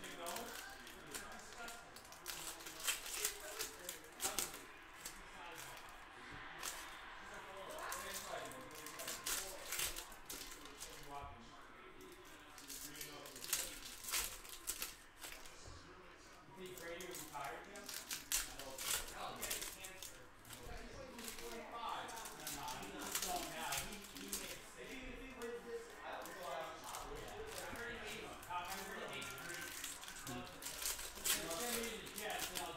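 Foil wrappers of Panini Donruss football card packs crinkling and tearing as the packs are ripped open by hand. Many sharp, irregular crackles run throughout.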